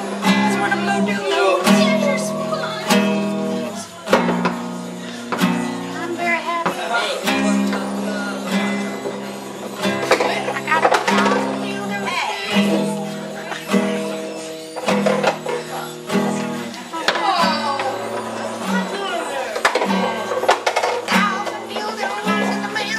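Acoustic guitar strummed in a steady repeating chord pattern, the chord changing about once a second, with a voice over it at times.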